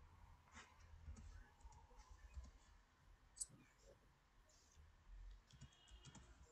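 Faint, irregular clicks of computer keyboard keys as a short word is typed, with one slightly louder click about three and a half seconds in.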